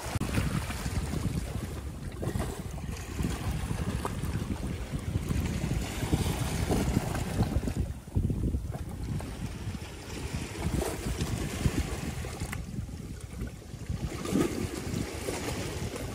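Wind buffeting the microphone over the wash of waves on a rocky shore, in uneven gusts. The hiss thins out briefly about eight seconds in and again near thirteen seconds.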